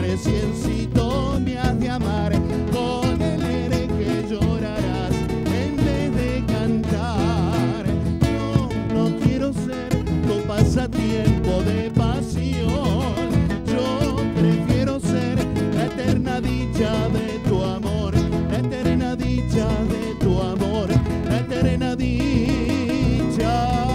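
Instrumental break in a song: a nylon-string classical guitar plays the melody over a strummed acoustic guitar and electric bass, at a steady moderate level.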